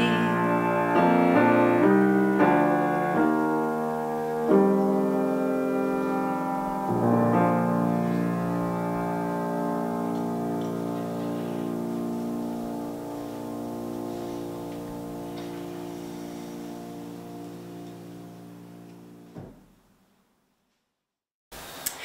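Grand piano playing the closing bars of a song accompaniment: a few chords in the first seven seconds, then a final chord left to ring and slowly die away. The sound cuts out to silence a couple of seconds before the end.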